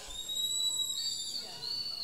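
A long, high-pitched whistle held on one steady note, stepping up a little in pitch about a second in.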